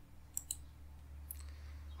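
A few faint computer-mouse clicks, the first about a third of a second in and another just past one second, over a low steady hum.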